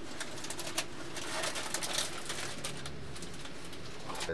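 A quick run of sharp clicks and light rattles over a steady hiss inside a howitzer's armoured turret, dying away after about three seconds.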